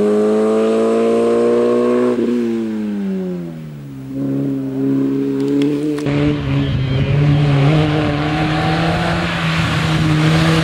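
Peugeot 106 Rally's four-cylinder engine racing at high revs. Its note falls and fades as the car moves away, then holds lower and steadier. About six seconds in the sound changes abruptly, with more low rumble, and the engine pulls harder, rising in pitch near the end.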